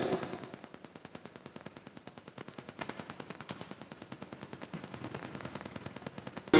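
A fast, even run of faint clicks, many to the second, after a louder sound dies away in the first half second.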